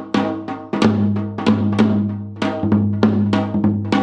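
Hybrid janggu, a Korean hourglass drum, struck a dozen or so times in an uneven pattern. Each stroke rings on in a deep, sustained tone.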